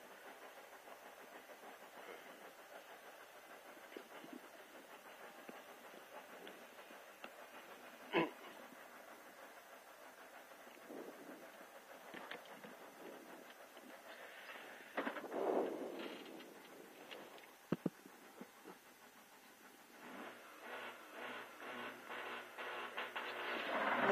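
Rally car waiting at the start line, heard from inside the cabin: a faint steady background with a few isolated clicks and knocks. In the last few seconds the engine is revved in quick repeated pulses that grow louder, just before the launch.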